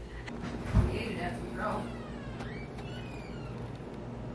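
A low thump about a second in as the camera is handled, followed by a faint high voice.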